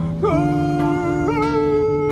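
A man singing in a voice that sounds like Scooby-Doo, holding one long note and then sliding up to a second held note, over a sustained low accompaniment.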